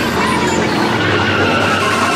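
Psytrance track in a breakdown: sustained synth tones and a noisy sweep with gliding pitches, without the kick drum.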